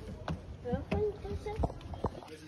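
Footsteps on wooden stair treads: three dull knocks, one step every half second or so.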